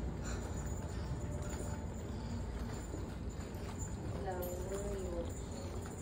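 Footsteps on a hard tiled hallway floor as someone walks along a corridor, over a steady low hum. A brief voice sounds about four seconds in.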